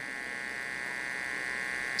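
Steady electrical buzz, a hum of many even tones, running through a pause in the speech.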